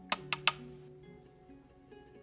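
Three quick, sharp clicks of clear plastic storage containers being handled in the first half-second, over soft background music.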